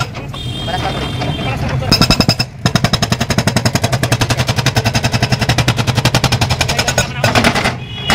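Hydraulic breaker (rock hammer) on an excavator pounding a concrete road surface: a fast, even run of sharp blows, roughly ten a second, over the steady drone of the excavator's engine. A short burst of blows comes about two seconds in, then a long continuous run through most of the rest.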